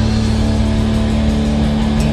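Live rock band playing loud, with electric guitars and drums, one long note held steady throughout.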